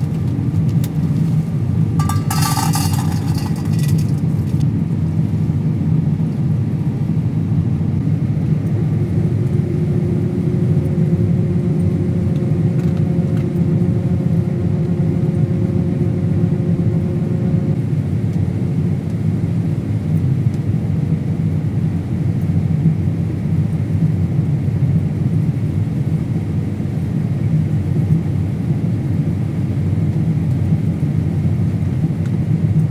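Combine harvester running steadily while cutting soybeans, its engine and threshing drone heard inside the cab. A brief higher-pitched rustle comes about two seconds in, and a faint steady tone joins from about nine to eighteen seconds in.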